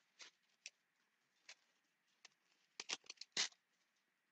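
Thin Bible pages being turned by hand: a string of short, faint paper rustles, with a quick cluster of them about three seconds in.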